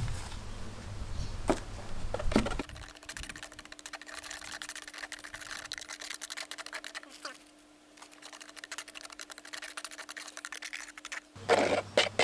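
Wet stone-fix cement slurry being stirred in a plastic tub: faint, dense scraping and ticking from the mixing, with a steady low hum behind it for most of the stretch.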